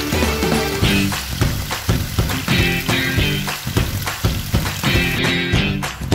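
Background music over pork ribs sizzling as they sear in a pot; the sizzle drops out about five seconds in.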